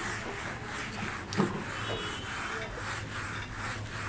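Handheld whiteboard eraser rubbing across a whiteboard, wiping off marker writing.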